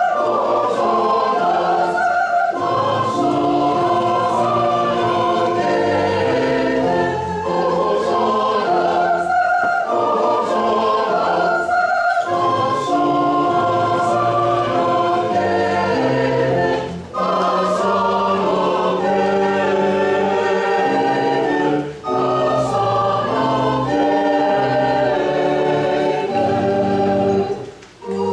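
Church choir singing an anthem in parts, holding sustained chords, with short breaks for breath between phrases about 17 and 22 seconds in.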